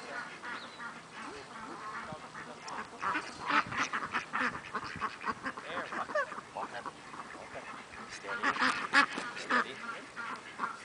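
A small flock of ducks quacking over and over as a herding dog works them, in clusters of short calls that grow busier about three seconds in and again near the end.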